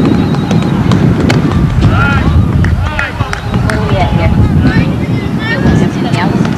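Wind buffeting a camcorder microphone in a steady low rumble, with indistinct voices of players and spectators calling in the background.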